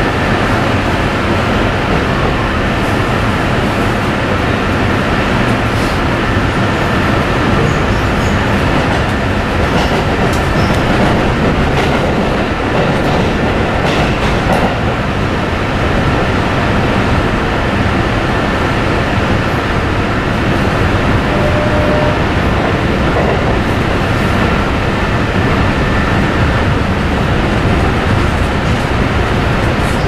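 Cabin noise of a Chiyoda Line commuter electric train running between stations: a steady rumble of wheels on rail with a faint high tone and a few light clicks.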